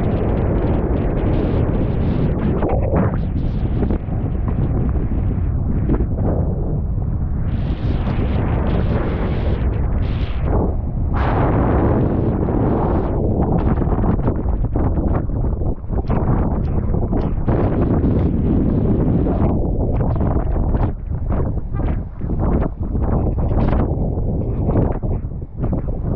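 Strong wind buffeting an action camera's microphone: a loud, low rumble that gusts and fluctuates, with a few brief lulls in the last several seconds.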